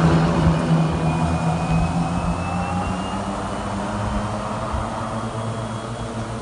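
Small open utility vehicle, a buggy or golf-cart type, driving past and away. Its engine runs steadily and fades as it goes, with a faint rising whine in the first few seconds.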